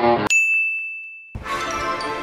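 Background music cuts off a moment in, giving way to a single high bell-like ding that rings at one pitch and fades over about a second. Then music starts up again.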